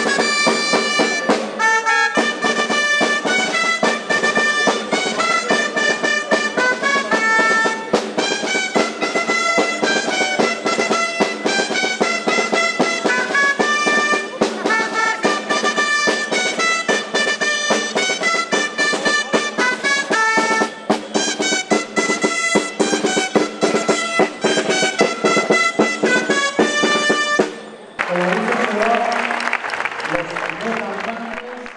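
Dulzainas playing a lively folk dance tune over a steady percussive beat. The music stops suddenly near the end and the crowd breaks into applause.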